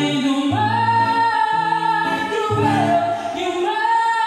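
Live band performing: singers holding long sustained notes that change pitch about once a second, over guitar with low bass notes stepping underneath.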